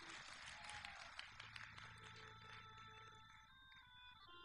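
Near silence: a faint room tone, with the first faint sustained notes of the accompanying music coming in near the end.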